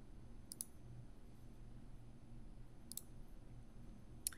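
Computer mouse clicking, faint: a quick pair of clicks about half a second in and a single click near three seconds, over a faint steady low hum.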